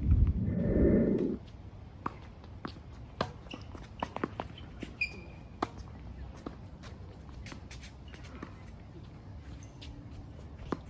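Tennis ball struck by rackets and bouncing on a hard court during a doubles rally: sharp pops come every second or so, with a brief squeak about five seconds in.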